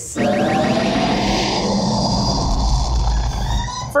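Sci-fi spaceship jump-to-lightspeed sound effect: a rushing whoosh with sweeping tones that builds into a deep engine rumble over about three seconds, then falls away.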